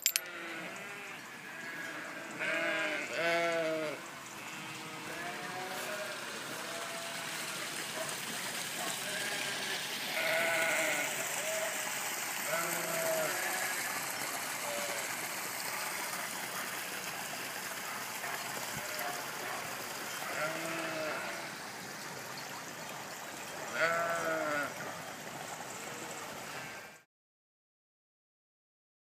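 A flock of sheep bleating, many overlapping calls of differing pitch over a steady background hiss, with louder calls about three seconds in and near the end. The sound cuts off suddenly shortly before the end.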